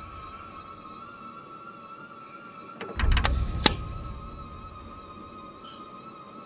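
Horror-film soundtrack: a steady, slightly wavering high drone tone, with a deep low boom about three seconds in that fades slowly, and a few sharp clicks at the same moment.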